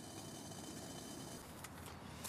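Faint steady hiss of a gas-fired camping kettle of boiling water, with a couple of light clicks near the end.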